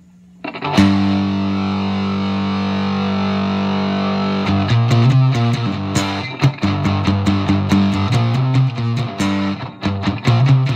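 Homemade cigar-box guitar with a rod piezo under the bridge and a single-coil bass magnetic pickup, both outputs amplified and mixed together. A chord is struck a little under a second in and left to ring for several seconds. It is followed by a rhythmic picked riff.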